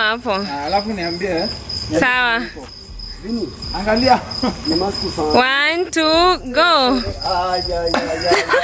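A cricket trilling: one steady, high-pitched continuous tone throughout. Loud, excited men's voices rise over it in wavering bursts, the loudest near the start, about two seconds in, and again after five seconds.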